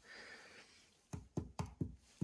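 Four light knocks in quick succession, about a second in, as a hand taps and handles a wooden bee winter box and the sugar slab inside it, which has set hard.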